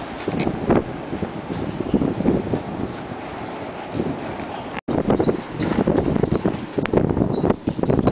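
Irregular footsteps on a hard concrete yard with rustling wind and handling noise on the microphone, broken by a short dropout just before five seconds in.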